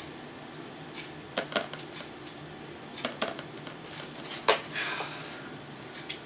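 Plastic toy telephone being handled: a handful of sharp clicks and knocks as the handset is lifted and worked, the loudest about four and a half seconds in, followed by a brief hiss. The toy's speaker stays silent: no connection.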